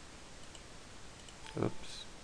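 A few faint computer mouse clicks over quiet room tone, then a man says "oops" near the end.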